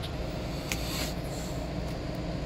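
Steady low background hum with an even hiss over it, and a soft click at the start and another faint one just under a second in.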